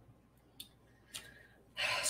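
Quiet room with two short, soft breath sounds, then a woman starts speaking just before the end.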